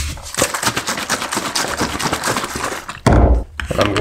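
A collapsible plastic accordion bottle of E-6 film-developing chemistry, freshly mixed with distilled water, being shaken hard, with fast continuous sloshing and rattling. A loud thump comes about three seconds in.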